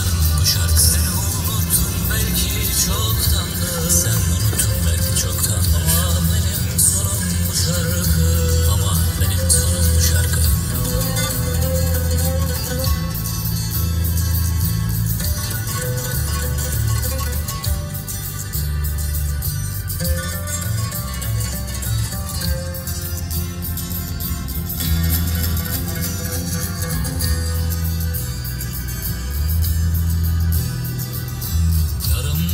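Music: an instrumental stretch of a Turkish-language pop song, with a heavy pulsing bass and a wavering lead melody.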